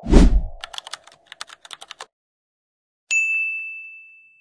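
Edited-in logo sound effects. A loud low thump with a falling swish comes first, then a quick run of typing-like clicks over a steady hum that stops about two seconds in. About three seconds in, a single bright ding rings on and fades.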